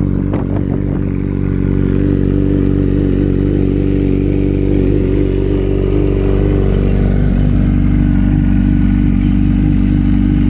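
Kawasaki ZX-14's 1352 cc inline-four engine idling steadily on a cold start, at an even, unchanging pitch.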